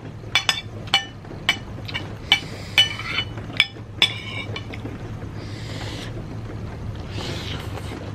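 Metal spoon and fork clinking and scraping against a ceramic plate: about nine sharp, ringing clinks in the first four seconds, then quieter with two soft hissy sounds, over a low steady hum.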